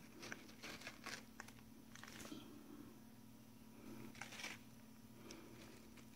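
An African grey parrot biting and tearing into watermelon flesh with its beak: faint, irregular crunches and clicks, bunched about a second in and again around four seconds, over a steady low hum.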